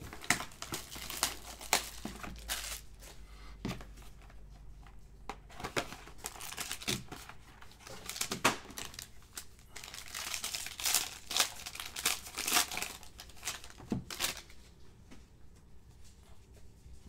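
Foil trading-card pack being crinkled and torn open by hand, with a cardboard box being handled: many irregular crackles and rustles, easing off briefly in the middle and again near the end.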